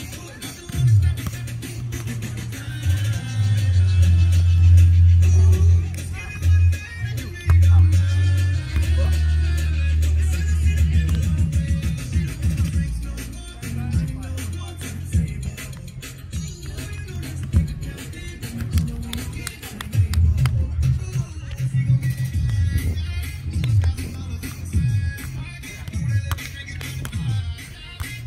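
Music with a prominent bass line: long held bass notes in the first half, then a quicker pulsing bass.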